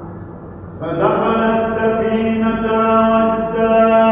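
A man's voice chanting a Gospel reading in Byzantine eighth-tone chant. About a second in he takes up one long note and holds it steady on a single pitch.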